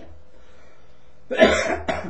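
A man coughs loudly about a second and a half in, a hard cough followed at once by a short second one.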